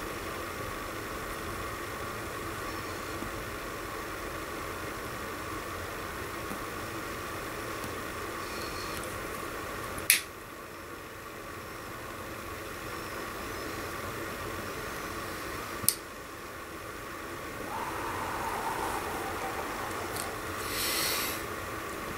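A lighter clicking twice, about six seconds apart, as a tobacco pipe is relit, over a steady low hiss. Breathy puffing on the pipe comes near the end.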